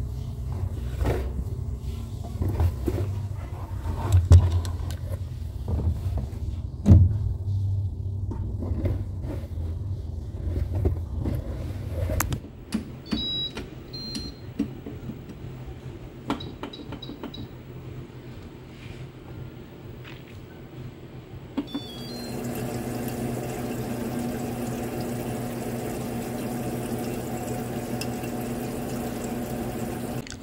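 Electrolux top-loading washing machine being loaded and started: clothes dropped into the drum with rumbling and a few knocks, then short electronic beeps as control-panel buttons are pressed. About two thirds of the way in, after a last pair of beeps, the machine starts a steady fill, water running into the tub with an even hum.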